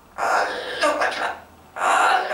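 Blue-fronted amazon parrot making speech-like chatter in two bursts, the first about a second long and the second starting near the end.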